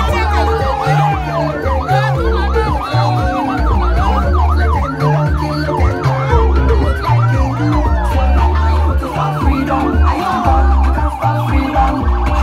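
Escort motorcycle's siren yelping rapidly, its pitch swooping up and down several times a second, over loud music with a heavy bass line.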